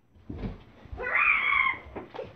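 A low bump, then a loud, high-pitched cry from about a second in that lasts most of a second before fading.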